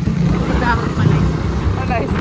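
Suzuki Raider 150 Fi's single-cylinder four-stroke engine running at a steady cruise at about 34 km/h, with wind and road noise, and bits of a person's voice over it.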